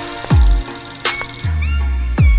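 Instrumental break of an electronic pop track: deep bass hits that drop steeply in pitch, with a high, bell-like synth tone warbling above them.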